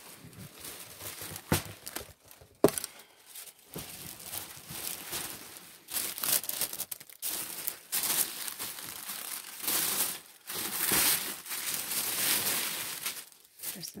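Thin tissue paper crinkling and rustling as it is handled and spread inside a cardboard box, growing louder and busier about halfway through. Two sharp knocks come in the first few seconds.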